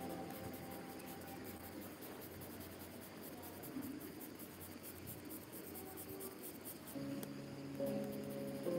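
Coloured pencil shading on paper: faint, scratchy back-and-forth strokes. Soft background music fades out over the first couple of seconds and comes back near the end.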